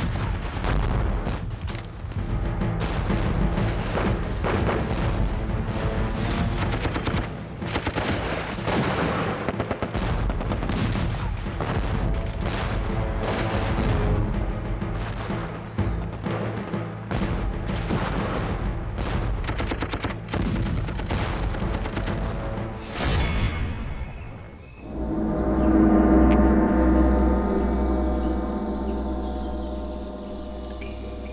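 Film battle sound effects: dense machine-gun fire and explosions over a dramatic music score. About 25 seconds in the gunfire stops and the music swells into loud, sustained tones.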